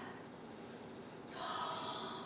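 A person taking a long sniff through the nose, starting a little over a second in, breathing in the smell of meatloaf just out of the oven.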